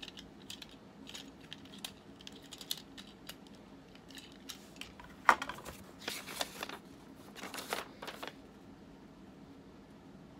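Small clicks and knocks of a plastic action figure being handled and its parts worked, with one sharper click about five seconds in. Paper rustles twice as an instruction sheet is unfolded.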